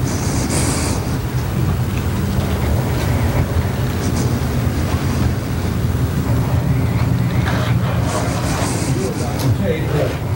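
Opening of a video trailer's soundtrack played over room loudspeakers: a loud, steady low rumble with airy whooshes about half a second in and again near the end. A man's narrating voice begins just at the end.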